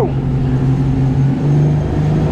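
Twin Suzuki 300 hp V6 four-stroke outboard motors running hard as the boat accelerates, their engine note stepping up in pitch about halfway through, with rushing wind and water underneath.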